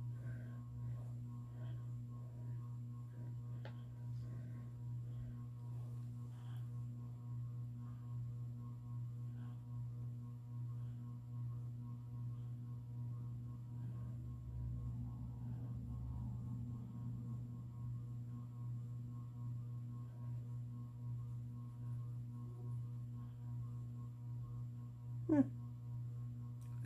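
Ceiling fan running with a steady low hum and a few faint light ticks.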